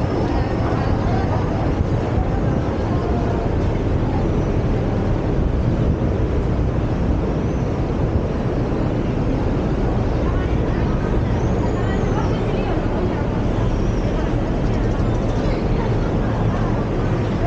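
Steady city street noise: road traffic running below, with passers-by talking.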